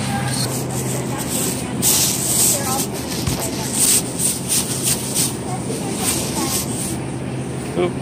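Produce-case misting nozzles spraying water over the vegetables in repeated hissing bursts, with a steady low hum beneath.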